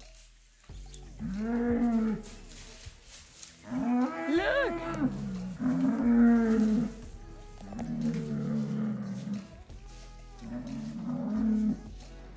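Bulls bellowing as they spar, about five long drawn-out calls one after another. The loudest, around four to five seconds in, rises and falls in pitch.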